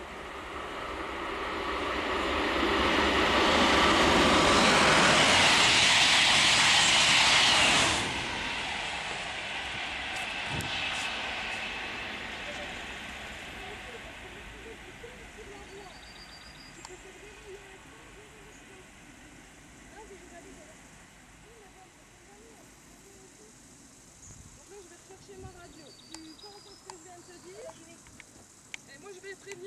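High-speed test train passing at speed on a new high-speed line: a loud rushing noise builds over a few seconds and cuts off suddenly about eight seconds in. A fainter rush follows and slowly fades as the train draws away.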